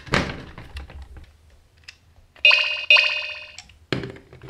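A plastic marble-run piece clacks into place, then about two and a half seconds in a VTech marble run's battery-powered rocket piece plays a loud electronic chime that starts twice in quick succession and lasts about a second. Another plastic clack comes at the very end.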